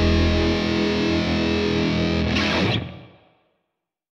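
The closing bars of a grunge rock song: distorted electric guitar through effects. The deep bass drops out about half a second in, and about three seconds in the song fades out, ending the track.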